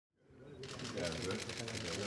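Camera shutters clicking rapidly and continuously, many clicks a second, over people talking. The sound fades in from silence at the very start.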